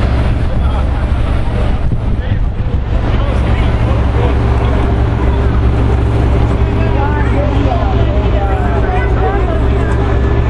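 City street traffic noise: a steady low rumble of vehicles, with indistinct voices of people talking nearby, more noticeable in the last few seconds.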